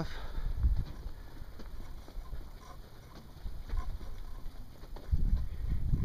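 Footsteps of a person walking, over a low rumble on the microphone. There is a cluster of heavier thuds near the end.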